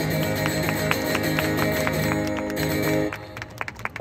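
Acoustic guitar playing the closing chords of a song on its own, with a steady picked rhythm, ending about three seconds in. A few sharp clicks follow near the end.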